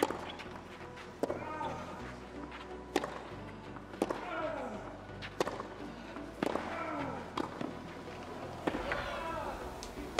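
Tennis rally on a clay court: sharp pocks of racket strings striking the ball about once every second or so, most of them followed by a player's short grunt that falls in pitch.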